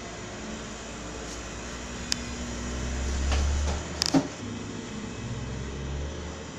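Electric sewing machine running as a seam is sewn, its motor hum building and then stopping about four seconds in, with a few sharp clicks around it.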